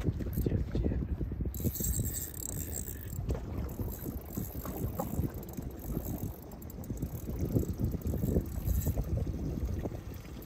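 Wind buffeting the microphone over water lapping against a small boat's hull, an uneven low rumble that swells and dips.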